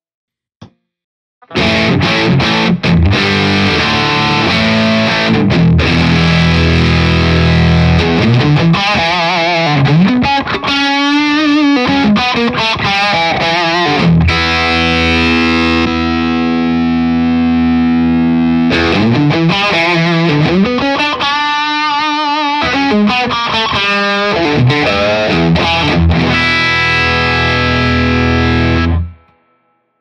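Distorted electric guitar played through a breadboarded op-amp distortion circuit with diode clipping, sustained chords and single-note bends. A brief click about half a second in comes before the playing starts about 1.5 s in, and the playing stops about a second before the end.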